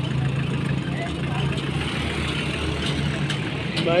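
Engine of a Hyundai Shehzore pickup truck running as the truck pulls away, a steady low drone.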